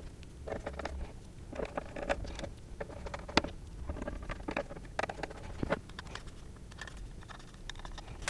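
Small screwdriver driving small bolts into a carbon-fibre and plastic screen housing: irregular light clicks and short scrapes of the driver and bolts, with knocks as the housing is handled.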